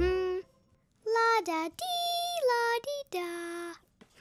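A high, child-like voice singing a short run of held notes, stepping up and down in pitch.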